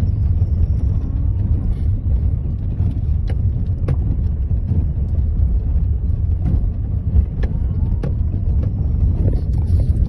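Car driving over a rough dirt track through dry grass, heard inside the cabin: a steady low rumble of tyres and suspension, with a few sharp knocks as the car jolts over the ruts.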